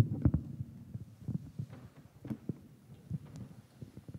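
Handheld microphone being handled on its stand, picked up through the microphone itself: a sharp knock at the start, then irregular low thumps and rumbles with a few small knocks.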